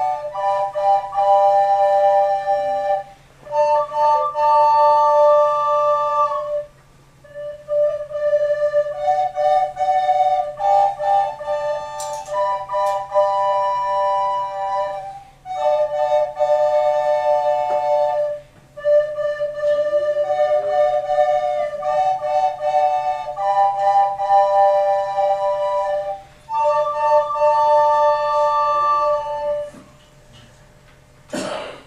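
Children's recorder ensemble playing a tune in several parts at once, in phrases separated by short breaks for breath.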